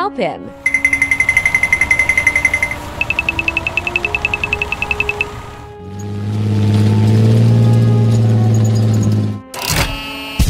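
Edited sound effects over background music: two runs of rapid, high-pitched rattling pulses, then a low tank-engine rumble that swells for a few seconds, cut off by a sudden loud blast near the end.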